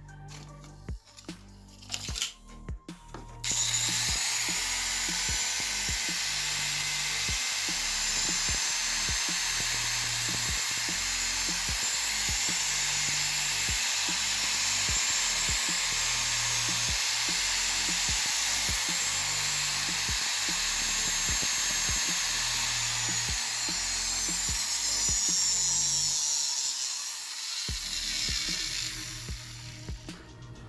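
TAAM TM115B angle grinder, rear cover off, switched on a few seconds in. It runs at full speed with a steady, high-pitched motor whine, then slows down near the end. It is sparking heavily at the brushes, the sign of its damaged commutator.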